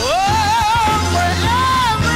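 Gospel choir singing with instrumental accompaniment. A leading voice slides up sharply into a long note with vibrato, then rises to a second held note near the end, over a steady bass underneath.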